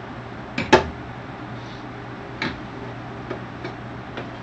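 Small handling noises at a kitchen counter: two sharp clicks about two seconds apart and a few faint ticks, over a steady low hum.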